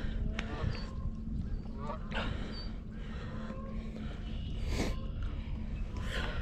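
A few faint goose honks, short calls spread through the few seconds, over a steady low rumble.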